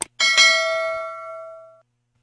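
A mouse-click sound effect, then a notification bell struck once, ringing and fading out over about a second and a half: the bell chime of a YouTube subscribe animation.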